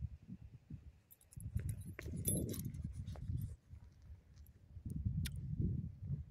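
Metal ID tags on a pug's collar clinking and jingling as the dog moves, over low, uneven rumbling.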